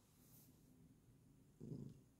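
Faint purring of a dozing Bengal cat, with a brief louder low swell near the end.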